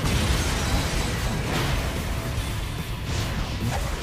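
Anime battle soundtrack: music under fight sound effects, with a heavy low rumble and a few impacts and whooshes.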